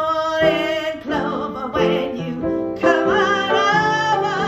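A woman singing several held notes with a wavering vibrato in a slow blues-jazz song, over piano accompaniment.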